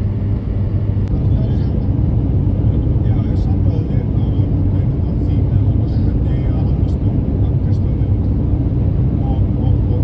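Steady low rumble of a car's engine and tyres on a snowy road, heard from inside the cabin while driving.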